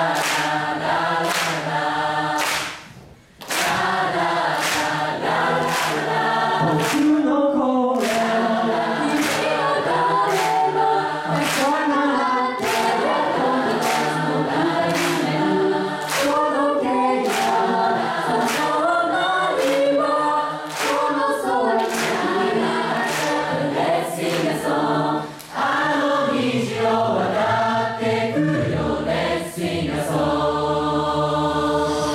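Large a cappella choir of mixed male and female voices singing together in harmony, with a sharp steady beat about every three-quarters of a second. The singing breaks off briefly twice, about three seconds in and about twenty-five seconds in.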